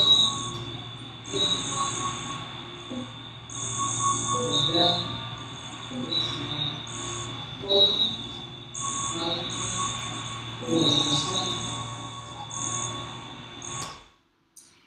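Played-back sound piece that turns sensor data into sound in real time: a steady high whine and a low hum under blocks of hiss that switch on and off, with scattered short tones and clicks. It cuts off abruptly at the end.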